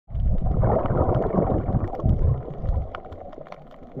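Underwater water noise picked up by a submerged camera: a loud, low gurgling rumble of moving water and bubbles for about the first three seconds, then quieter, with scattered faint crackling clicks.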